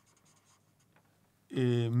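Felt-tip marker writing a word on paper: a few faint, short strokes. About one and a half seconds in, a man's drawn-out "eh" takes over.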